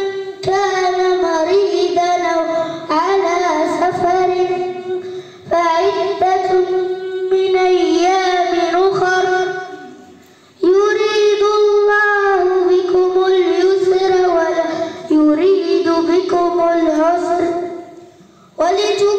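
A boy chanting a Quran recitation, a high voice drawing out long, ornamented melodic phrases with short pauses for breath between them.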